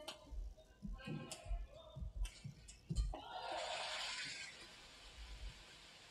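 Badminton rally: rackets strike the shuttlecock in sharp cracks, several over the first three seconds, with dull thuds of footwork on the court. The rally ends about three seconds in, followed by a short burst of crowd applause that fades over a second and a half.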